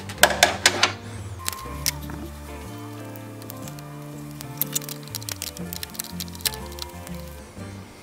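Background music with a steady bass line, over sharp metallic clicks in the first second and again about four and a half seconds in: a socket ratchet and tools working the nut on a car battery's positive terminal clamp.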